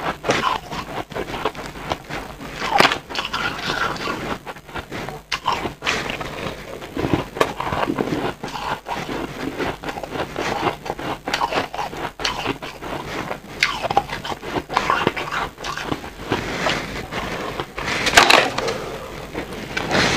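Close-miked chewing of crumbly white ice: a dense, continuous run of crackling crunches, with louder crunches about three seconds in and again a little before the end.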